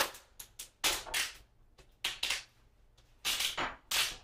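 Handling noises at a workbench: a series of short, sharp scraping and rustling bursts about once a second as objects are moved and set down.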